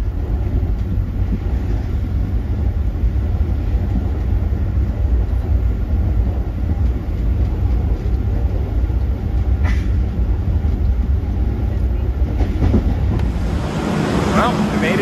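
Passenger train in motion, heard from inside the carriage: a steady low rumble of wheels on track, with one brief click about ten seconds in.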